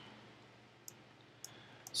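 A few faint, sharp clicks of a computer mouse against quiet room tone.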